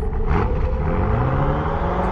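A car engine revving, its pitch climbing steadily for about a second and a half over a low rumble.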